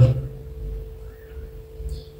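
A pause in a man's talk, holding a faint steady pure tone with a faint short chirp a little over a second in.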